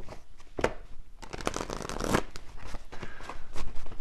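A deck of tarot cards shuffled by hand: scattered card clicks, with a dense run of rapid card flicks about a second in that lasts about a second.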